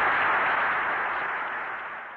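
Studio audience applauding as a song ends, heard through an old radio recording with a dull, narrow top end; the applause fades away.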